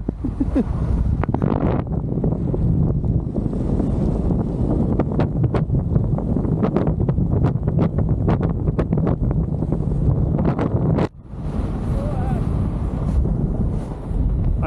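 Air rushing over the camera microphone of a paraglider in flight: loud, steady wind noise with crackling buffets, dropping out briefly about eleven seconds in.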